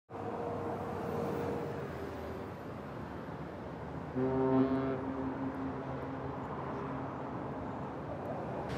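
A boat's horn sounds one long, low blast about halfway through, fading away over about three seconds, over a steady hum of outdoor city noise.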